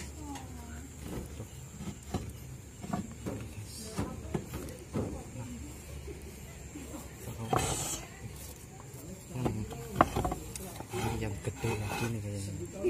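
Clay roof tiles being handled and set back into place: scattered clinks and knocks of tile against tile, with a short scraping rush about halfway through and the sharpest knock near the end.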